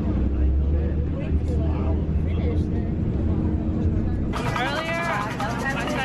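Outdoor street noise with a steady low rumble and faint crowd voices. About four seconds in, it cuts suddenly to close-by voices.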